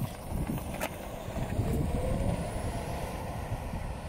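Ford F-150 Lightning electric pickup pulling away and driving off: mostly tyre and road noise with a low rumble, and a faint rising whine about halfway through as it speeds up.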